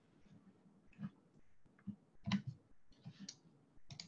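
A handful of faint, irregular clicks, about five in four seconds, in an otherwise quiet pause.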